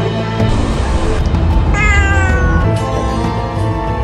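A cat meows once, a single call of just under a second that falls slightly in pitch, over background music.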